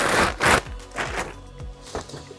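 A plastic bag rustling as a differential is unwrapped, then a few light knocks of heavy metal parts set down on a workbench, over background music.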